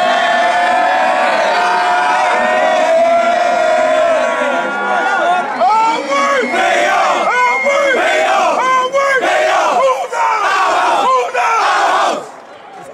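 A group of young men shouting and cheering together in celebration. One long held yell fills the first few seconds, then short overlapping whoops and shouts follow.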